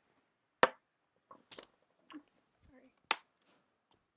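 Handling noise: a few sharp knocks and clicks, the loudest just over half a second in and another about three seconds in, with faint rustles and scrapes between, as a person settles back in front of the camera and its microphone.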